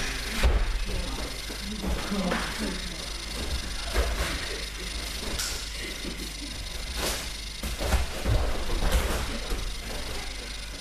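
A body thuds onto the training mat from a throw about half a second in, followed by several more scattered thumps and knocks of bodies and feet on the mats, over background voices.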